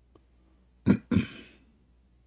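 A man's throat noise close to the microphone: two short, loud bursts about a quarter of a second apart, like a quick double throat-clear.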